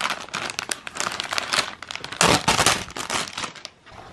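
Clear plastic packaging bag crinkling and rustling as hands pull it open and slide the banner's card backing out, loudest a little past halfway and stopping shortly before the end.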